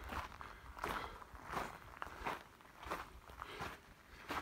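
Footsteps walking at a steady pace on a gravelly dirt path, a step about every two-thirds of a second.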